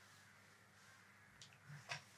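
Near silence: room tone, with one short rustle or clink near the end.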